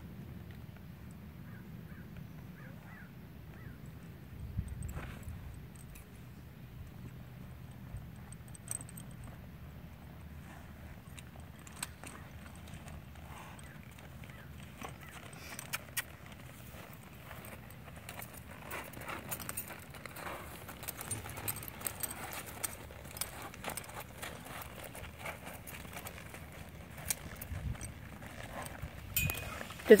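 Quiet sounds of a saddled horse being mounted and then walked on a dirt arena: scattered soft hoof steps and the jingle of its tack. The steps and clinks come more often in the second half.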